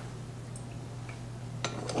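Quiet kitchen handling at a stand mixer's steel bowl over a steady low hum, with a single sharp metal click about a second and a half in.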